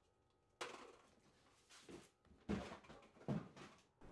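Faint, scattered knocks and rustles of plastic plant pots being handled and set down into a plastic storage tub, about four soft bursts of sound.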